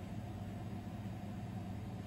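Steady low background hum with faint hiss and no distinct sounds: room tone.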